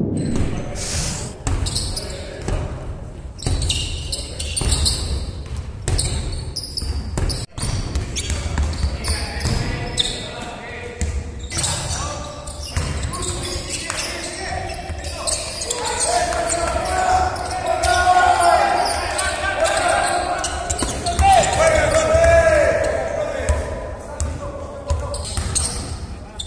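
Basketballs bouncing on a hardwood court in a large, echoing arena, many quick thuds overlapping, with players' voices calling out over them.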